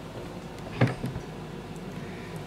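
A metal pie server scraping against an aluminium foil pie tin as a slice is lifted out, with one short scrape a little under a second in over quiet room tone.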